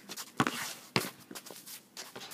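A basketball bounced twice on an outdoor asphalt court, about half a second apart, with sneakers shuffling and scuffing on the court as the players move.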